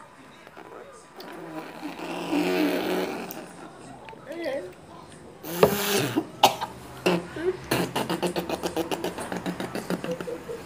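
A woman's disgusted groaning and gagging as she swallows raw egg, with a sudden loud sputter about halfway through, followed by a fast run of laughter.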